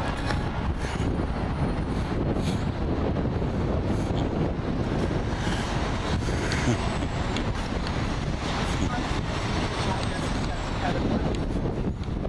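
Steady city street noise: traffic sound with wind rumbling on the microphone.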